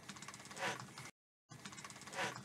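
Pen writing on paper close to a studio microphone: a quick run of faint scratchy clicks with one louder brief rustle, the audio cutting out completely for a moment partway through.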